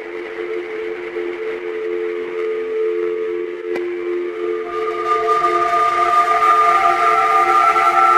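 Strange ambient noise: a drone of two low held tones over a hiss, growing louder, with higher whistle-like tones joining about five seconds in. A faint click sounds near the middle.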